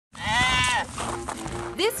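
A deer fawn bleating once, a single call of under a second that rises and then falls in pitch, followed by music.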